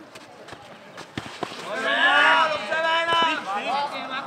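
A man's loud shouted call from about two seconds in, lasting over a second, with a few sharp knocks of the nohejbal ball being kicked and bouncing on the clay court.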